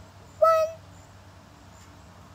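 A young girl's voice: one short, high, steady-pitched 'ooh' about half a second in, made through pursed lips.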